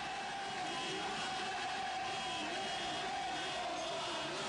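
A mass of motorcycles running in a crowded street: a steady engine-and-crowd din with one long held tone and a lower tone wavering up and down over it.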